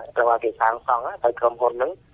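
Speech only: a voice talking without pause on a Khmer-language radio news broadcast, with the thin sound of radio audio.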